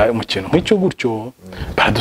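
A man talking in Kinyarwanda: speech only.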